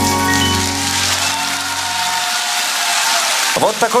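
The final sustained chord of the backing music fades out, and the audience applauds in an even wash of clapping.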